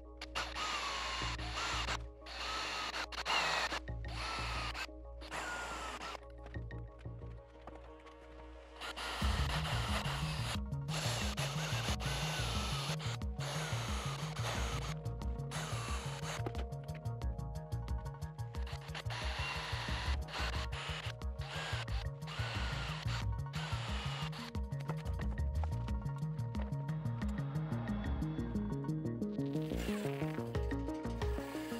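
Background music runs throughout, with a steady low beat coming in about nine seconds in. Under it, a cordless drill runs in short stop-start spells, its whine rising and falling as it bores small holes into a guitar fretboard.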